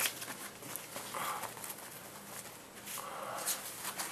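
Faint rustling and light clicking of folded paper slips being shaken and rummaged by hand inside a cloth baseball cap.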